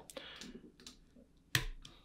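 Several separate keystrokes on a computer keyboard, sharp clicks, the loudest about one and a half seconds in.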